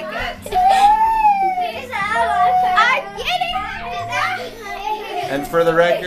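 Young children talking and calling out in high, sing-song voices, one after another with hardly a pause.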